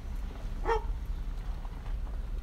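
One short animal call, like a bark, about two-thirds of a second in, over the steady low rumble of the Jeep's road noise inside the cabin.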